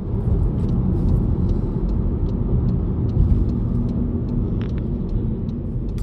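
Steady rumble of a car on the move, heard from inside the cabin: engine and tyre noise at road speed.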